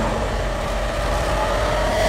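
Loud, dense film sound effect of an energy beam blast striking, a steady held tone over a constant low rumble.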